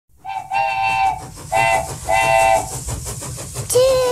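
Steam locomotive chime whistle blowing three blasts, long, short, long, over steady train running noise. A single lower-pitched whistle note starts near the end.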